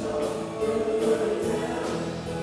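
Live band playing a song: sustained chords over a drum kit, with cymbal strokes about twice a second.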